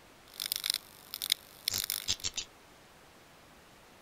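Digital glitch sound effects for an animated end card: a cluster of short, crackly, high-pitched bursts in the first half, over a faint steady hiss.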